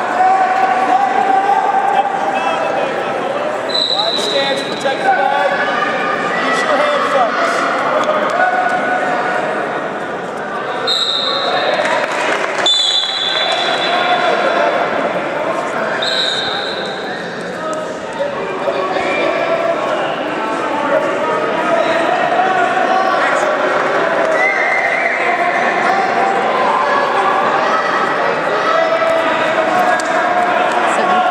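Voices of coaches and spectators calling out over a wrestling bout in a large, echoing gym, with several short, high squeaks in the first half.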